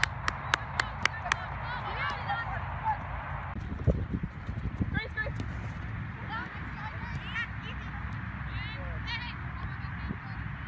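Sideline sound of an outdoor soccer match: one person clapping five or six times, about four claps a second, near the start, then scattered distant shouts and calls from players and spectators over steady open-air noise, with a low thump about four seconds in.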